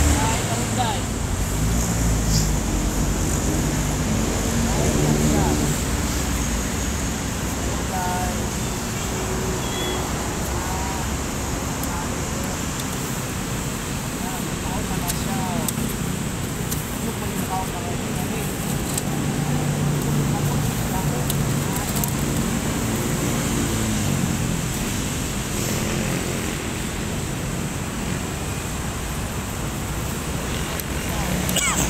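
Steady road traffic noise, a continuous rumble of passing vehicles, with indistinct voices and a few short high chirps over it.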